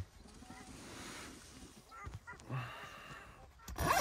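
Quiet inside a rooftop tent with a few faint chirps, then near the end a loud rasping zipper as the tent's canvas door is unzipped.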